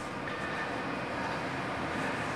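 Steady room background noise, an even hiss with no distinct events.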